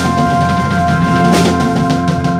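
Live rock band playing: drum kit, electric bass, electric guitar and keyboard, with held notes under occasional drum and cymbal hits.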